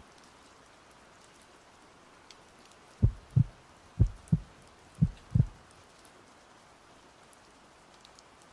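Heartbeat sound effect: three low double thumps, lub-dub, about one a second, starting about three seconds in, over a faint steady hiss.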